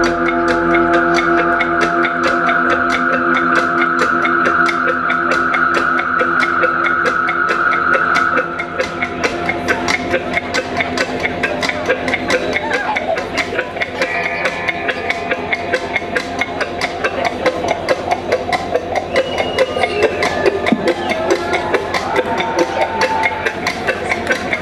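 Live rock band playing an instrumental passage without vocals: a sustained droning chord holds for the first third, then drops away, leaving a steady percussive pulse with guitar notes over it.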